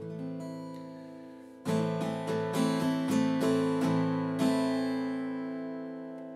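Acoustic guitar: a chord rings and fades, then about two seconds in a run of plucked chords, a few a second, left to ring and slowly dying away.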